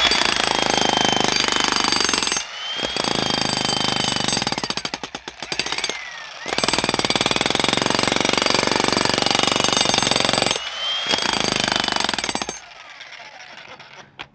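Harbor Freight Bauer 35 lb electric jackhammer with a flat chisel bit, hammering into rock in four runs with brief pauses between them. It stops about a second and a half before the end.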